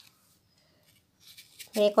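Faint short scrapes of a kitchen knife cutting into an apple, then a voice begins speaking near the end.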